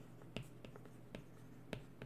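Stylus tapping and sliding on a tablet's glass screen while handwriting, heard as a few faint scattered ticks.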